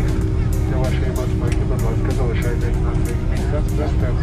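Boeing 767-300ER cabin noise on the ground: a steady low engine rumble and hum, with passengers' chatter and light clicks and clatter in the cabin.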